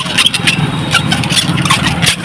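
Small motorcycle engine running as it passes close by, a steady low hum with scattered clicks over it.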